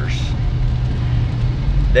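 Steady low drone of a car being driven, its road and engine noise heard from inside the cabin.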